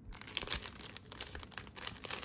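Clear plastic sleeve crinkling as it is handled, a dense run of irregular crackles.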